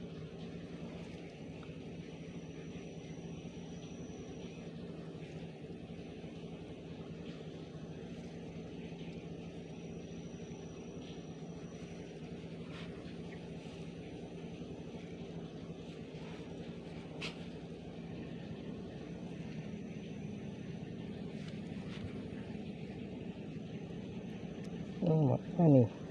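Steady low hum of a distant motor, unchanging throughout, with a couple of faint clicks in the second half.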